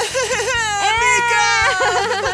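Wordless voices exclaiming with wavering, sliding pitch, over background music with a steady beat.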